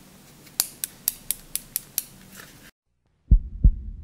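A plastic carabiner's gate clicking as it is worked by hand: seven sharp clicks, about four a second. After a sudden cut to silence, an intro sound effect of deep thumps in pairs over a low hum begins.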